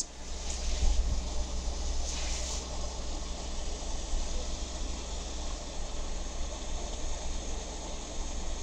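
Hunt School steel dip pen nib scratching across paper as lines are inked, with one brighter scratchy stroke about two seconds in, over a steady low hum and hiss.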